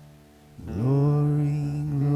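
Live worship music from a small band. A soft chord fades, then about half a second in a low note slides up and is held loud and steady.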